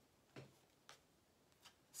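Tarot cards being handled as one is drawn from the deck: three faint clicks over about a second and a half.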